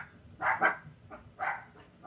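Pet dogs barking indoors: a few short, sharp barks, two in quick succession about half a second in and another about a second later.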